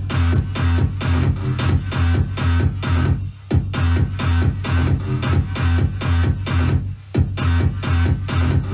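Electronic trance dance music with a steady beat and heavy bass, dropping out briefly twice, about three and a half and seven seconds in.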